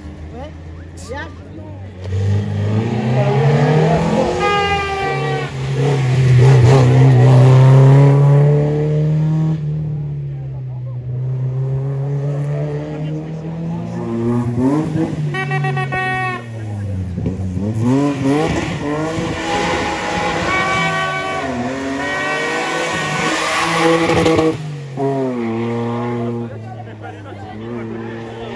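Rally car engines revving hard through a hairpin, the pitch climbing through the gears and falling on braking and downshifts. A quieter lull comes about ten seconds in, then another car passes, its pitch dropping sharply and climbing again as it brakes and accelerates away.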